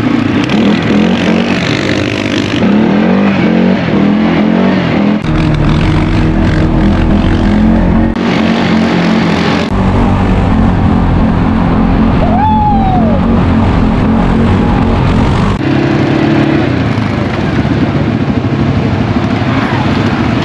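CFMoto CForce ATV single-cylinder engine running as it is ridden over grass, its pitch rising and falling with the throttle. The sound changes abruptly several times where the shots cut.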